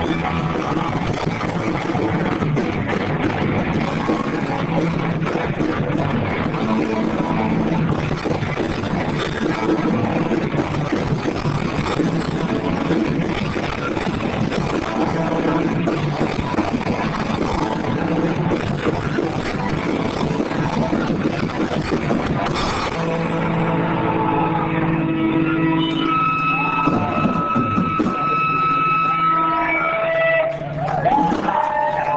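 Garage rock band playing live, loud and distorted, with dense guitars and drums. About 23 seconds in, the dense playing gives way to a few held, ringing notes.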